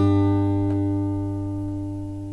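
Closing chord of a fingerpicked tune on a Collings OM2H steel-string acoustic guitar, ringing and slowly fading, with one light plucked note under a second in.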